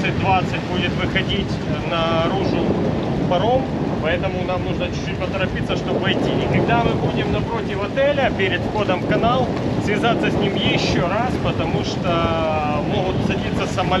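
Voices in a VHF radio exchange, with speech coming and going throughout over steady wind noise on the microphone.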